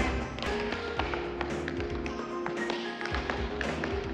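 Tap dancing: tap shoes striking the floor in a quick, irregular run of sharp taps, over a music track with a long held note.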